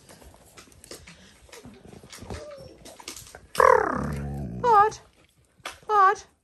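Dalmatian puppies playing: quiet scuffling and clicks at first, then past the halfway mark one loud cry sliding downward and two short wavering yips.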